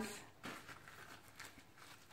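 Faint soft rustling and rubbing of a towel as wet hands are dried.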